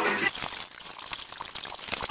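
Plastic cling wrap crackling and rustling as it is pulled off the roll and wound around a wrapped body.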